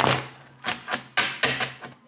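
Tarot cards being handled on a wooden table: a few short rustling and tapping sounds, one near the start, one about two-thirds of a second in and a longer one past the middle.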